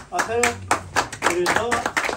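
Audience applauding in irregular claps, with a voice talking over it.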